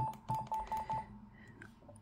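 Yaesu FT-817 transceiver's key beeps: about six short, high beeps in quick succession during the first second as its front-panel buttons are pressed to change band to 40 metres.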